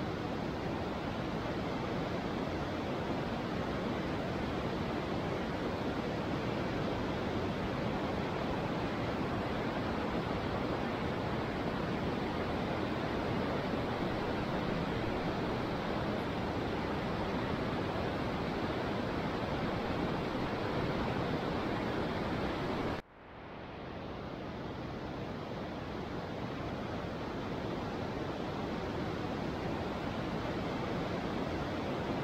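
A steady, even rushing hiss with no distinct events. It cuts out suddenly about three-quarters of the way through and fades back up over the next few seconds.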